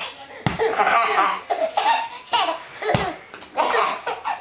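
A baby laughing in repeated bursts, with two sharp thumps about two and a half seconds apart.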